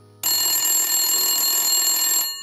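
Sound effect of an old-fashioned telephone bell ringing in one continuous ring, starting a moment in and stopping after about two seconds.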